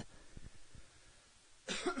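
A man clearing his throat once, a short rough burst near the end of an otherwise quiet pause.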